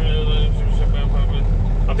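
Semi truck's diesel engine idling steadily, heard from inside the cab as a low, even rumble.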